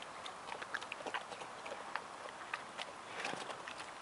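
Brown bear eating green grapes and pears off the ground: irregular wet smacking and crunching of its chewing, a few short clicks a second.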